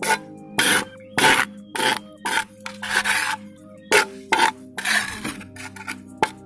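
Small trowel scraping back and forth through wet cement paste on a hard surface while mixing it, in short rasping strokes about twice a second.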